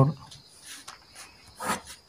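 Faint scratching of a pen on paper as lines are written and drawn, with one louder stroke near the end. A faint steady high tone runs underneath.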